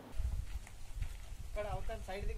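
Faint men's voices, starting about one and a half seconds in, over a low, uneven rumble.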